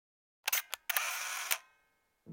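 Camera shutter sound effect: a few sharp clicks about half a second in, a brief whirr like a film winder, then a final click that fades out.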